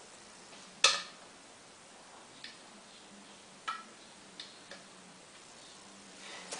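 A few sharp plastic clicks and taps as clear plastic cups and containers are handled and set down on a tile floor. The loudest comes just under a second in, followed by four fainter, scattered taps.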